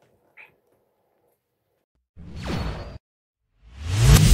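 A whoosh transition sound effect with a steeply falling pitch, lasting just under a second, about halfway through. Near the end a rising swell leads into electronic outro music.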